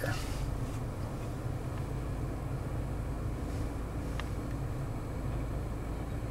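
Steady low hum in the cabin of a 2019 Toyota Corolla LE creeping in reverse: its four-cylinder engine running at idle, with the climate-control fan on. A faint click about four seconds in.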